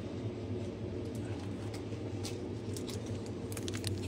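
Steady low room hum with a few faint light ticks and rustles of handling, more of them near the end as a foil booster pack is picked up.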